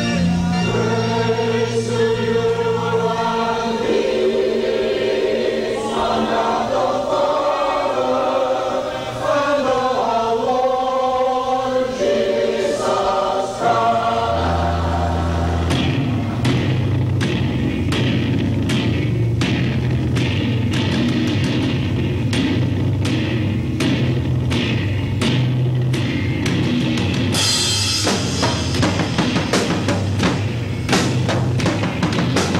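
Live band music: sustained organ chords with singing over them, then about halfway through the drums and crashing cymbals come in and the full band plays loud, heavy rock.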